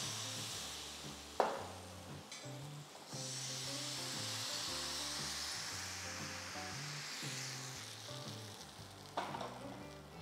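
Palappam batter sizzling in a hot appam chatti as it is poured in and swirled around the pan, the hiss growing louder about three seconds in and easing off near the end. A sharp knock about a second and a half in and another near the end.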